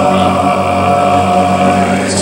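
A mixed-voice a cappella group holding the final chord of the song, a steady sustained chord with the low voices strong.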